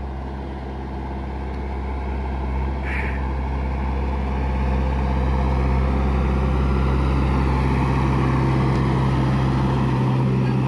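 JCB backhoe loader's diesel engine running steadily as its front bucket pushes snow off the road, getting louder over the first five seconds or so as the machine comes close.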